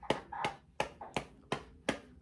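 A hand patting a baby's back in an even rhythm, about three soft pats a second, as if to burp the baby. A faint, short baby sound comes about half a second in.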